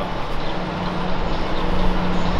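Steady urban street noise: a constant low hum over a rumble, like a vehicle running nearby.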